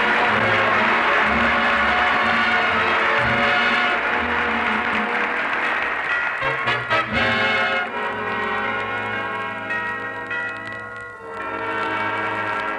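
Radio studio orchestra playing the introduction to a sentimental ballad, ahead of the tenor's entry. For the first few seconds the music is thick and mixed with audience applause; after that it settles into clearer sustained chords.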